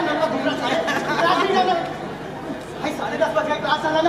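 Actors' voices speaking dialogue on stage, picked up in a large hall.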